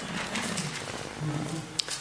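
A quiet pause in a talk: faint room noise with a couple of soft, low voice sounds and one short click near the end.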